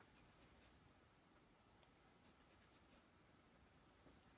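Near silence: room tone, with two small clusters of faint light ticks, the first early and the second in the middle.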